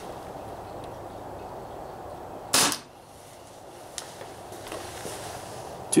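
Umarex P08 Luger CO2 blowback BB pistol firing a single 4.5 mm steel BB, a short sharp report about two and a half seconds in as the toggle cycles.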